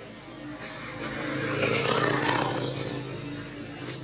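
A motor vehicle passing, its engine noise swelling to a peak about halfway through and then fading, over a steady low hum.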